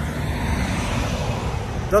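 Road traffic: a car passing on the road, a steady rush of tyre and engine noise.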